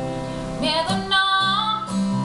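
Acoustic guitar played live with a female voice singing over it. The voice comes in about half a second in, sliding up into a long held note.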